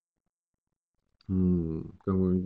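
About a second of dead silence, then a man starts speaking Russian with a drawn-out, level-pitched vowel like a hesitation sound.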